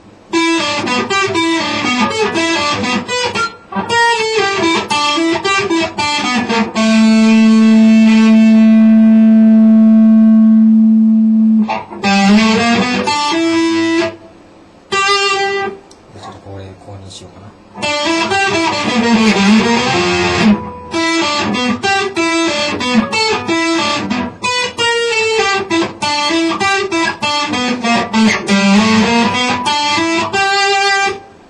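Electric guitar (a PRS with bird inlays) playing fast single-note runs of an E minor practice étude. A low note is held for about five seconds in the middle, followed by two short pauses, then the runs start again.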